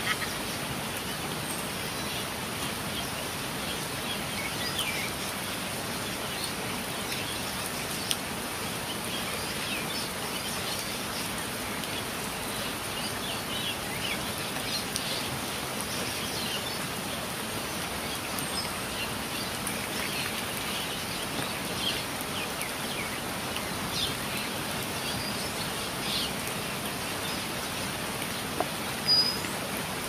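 Steady rainfall on garden foliage, with birds giving short scattered calls throughout. A brief louder noise comes near the end.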